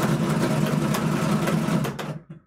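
Bubble craps machine rolling the dice: a steady motor hum under the rapid clatter of two dice bouncing inside the dome, dying away at the very end.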